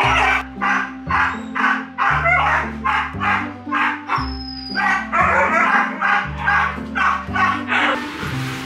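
Siberian huskies barking and yipping in quick, repeated calls, about two to three a second, over background music with a steady bass line.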